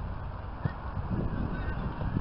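Wind rumbling on the camera microphone at an open-air football pitch, with a few faint, short distant calls.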